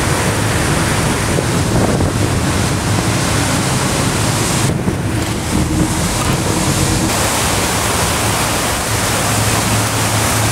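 Strong wind buffeting the microphone and water rushing along the hull of a small boat under way at sea, with a low, steady engine hum underneath. The sound changes abruptly about five seconds in and again near seven seconds.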